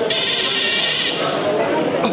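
A drawn-out, high-pitched voice held for about a second, over the hubbub of a hall.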